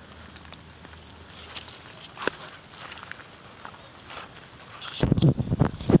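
Quiet outdoor background with a faint tick or two. Near the end comes about a second of rustling and low thumps from someone moving through grass and pumpkin leaves.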